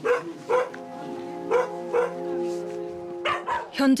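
Dogs in a shelter kennel barking, four short barks about half a second to a second apart. A soft sustained music chord comes in under them about a second in.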